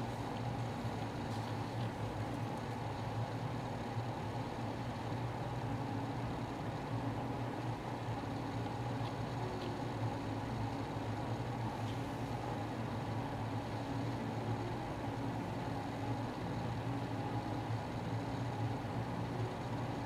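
Steady low mechanical hum of room machinery, unchanging throughout, with a few faint light clicks.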